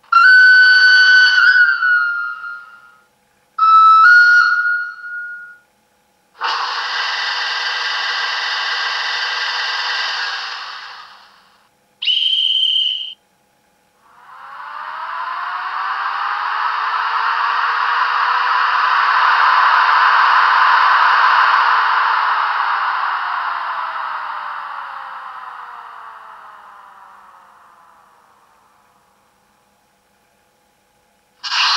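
Sound decoder of a Märklin/Trix H0 model of the SBB Ae 6/6 electric locomotive playing its factory sound functions in turn. First come two horn blasts, each stepping between two pitches, then a steady hiss of about four seconds and a short high whistle. Last comes a long sound that swells for several seconds and slowly fades away.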